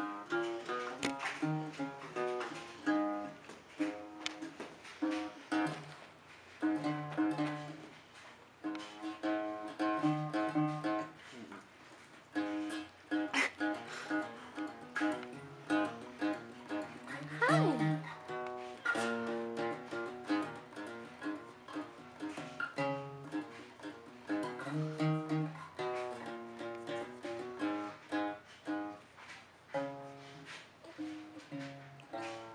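A tiny, small-bodied guitar being played, strummed and picked in a repeating chord pattern.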